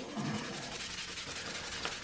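Sandpaper rubbing by hand on the underside of a plastic three-blade drone propeller, taking excess plastic off the heavy blade to balance it.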